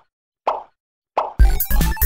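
Two short cartoon pop sound effects, about half a second and a second in, then intro music with a strong bass beat kicks in.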